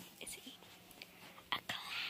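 Faint whispered speech, with a sharp click about a second and a half in.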